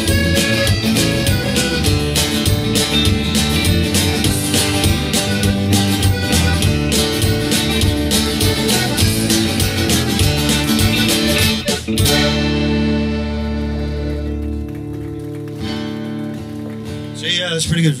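Live band of button accordion, strummed acoustic guitar and electric bass playing the closing bars of a country-style song. The playing stops about twelve seconds in on a held final chord that rings on for several seconds and fades.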